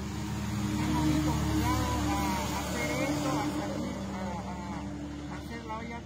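A motor vehicle's engine running close by, growing louder to a peak about a second in and then slowly fading, with voices in the background.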